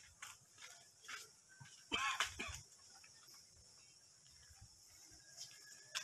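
A goat bleating once, a short wavering call about two seconds in.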